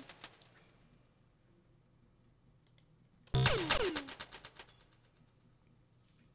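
A short electronic loop played back from Maschine: synth notes that each sweep steeply down in pitch over a low bass pulse. It trails off at the start and plays again for about a second just past the middle. In the quiet between there are a few faint clicks.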